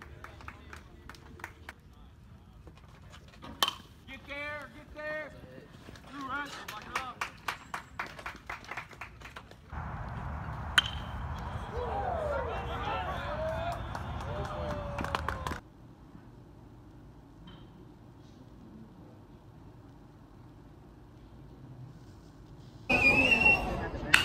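Sounds of a baseball game: scattered voices of players and spectators, and one sharp crack of a bat hitting the ball about halfway through, set in a steady rush of noise that stops suddenly a few seconds later.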